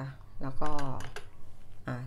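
A metal ladle tapping lightly against small glass dessert cups, a few quick clicks, under a woman's speech.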